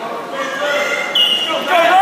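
Spectators' voices shouting and calling out in a large gymnasium, growing louder, with a brief high squeak about a second in.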